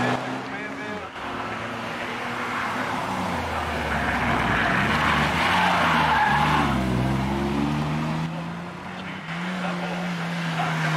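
Hillclimb race cars accelerating through a corner one after another, their engines revving up and dropping in pitch through gear changes. A burst of tyre squeal comes about midway as a BMW Z3 coupé slides through the bend.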